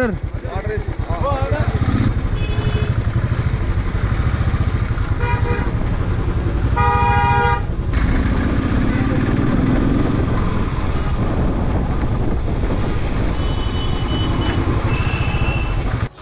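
Motorcycle engine running under way on the road, with vehicle horns honking: a few short toots and one longer honk about seven seconds in.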